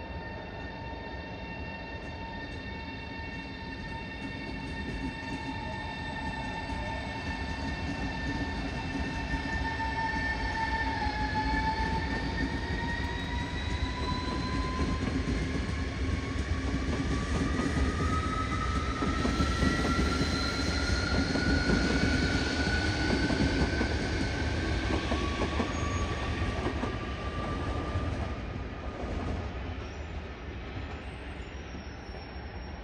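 Electric train accelerating: a whine with several overtones holds steady for about ten seconds, then rises steadily in pitch over the train's rumble. The sound grows louder toward about two-thirds of the way in and eases off near the end.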